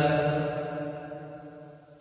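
A man's voice ringing on in a long echo after his last word: a steady hum at the pitch of his voice, fading away over about two seconds.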